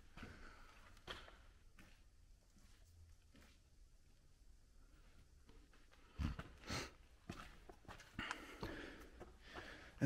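Near silence in a large empty auditorium, broken by a few faint footsteps and scuffs, with a cluster of them about six seconds in.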